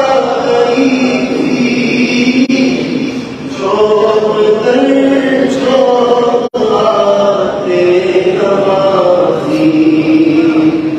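A man chanting an Urdu naat into a microphone, without instruments, in long held melodic lines that slide between notes. About six and a half seconds in the sound cuts out for a split second.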